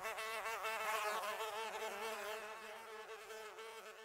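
Buzzing of a flying bee, steady in level with its pitch wavering up and down as it flies, growing fainter near the end.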